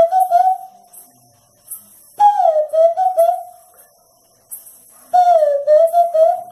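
Handmade wooden bird call (pio) blown to imitate the zabelê: loud whistled calls, each a note that dips in pitch and then levels off in a few short pulses, repeating about every three seconds.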